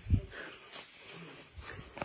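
Insects chirring steadily at a high pitch in dense forest, with one loud low thump just after the start as the handheld phone is jostled on the walk.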